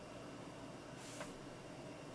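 Faint room tone, a steady low hiss, with one faint click a little over a second in.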